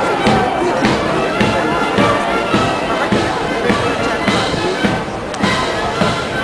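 Military band playing a march, with held melody notes over a steady drum beat of about two strokes a second, as the guards march past.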